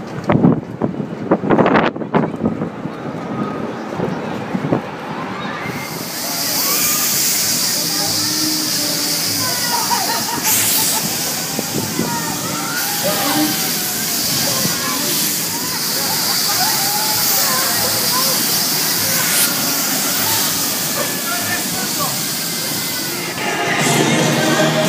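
People's voices for the first couple of seconds. From about six seconds in, a loud, steady rushing hiss, wind blowing across a phone microphone on a moving fairground ride, with faint shouts beneath it.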